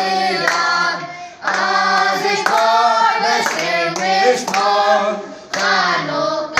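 A crowd singing together, with hands clapping along to the beat. The singing breaks off briefly twice, between phrases.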